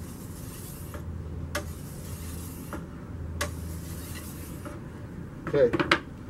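Steel edge of a shashka saber drawn along an oiled 600-grit whetstone in one-direction sharpening strokes: three scraping passes, each about a second long and opening with a light click as the blade meets the stone, with short pauses between.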